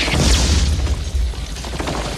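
A mortar round exploding close by: a deep boom with a burst of crackle at the start and a rumble that dies away after about a second and a half.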